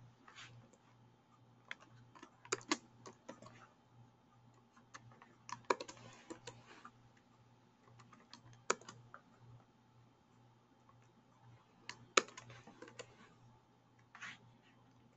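Computer keyboard keystrokes in scattered short bursts of clicks, as text is copied and entered between windows.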